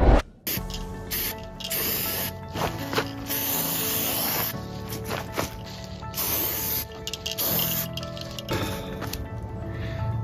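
Background music, with an aerosol can of marking paint hissing in several separate sprays of about half a second to a second and a half each.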